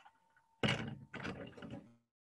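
Handling noise: two bursts of knocking and rubbing, the first about half a second in and the second just after a second in.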